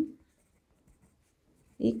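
A pen writing on paper: faint strokes between spoken words.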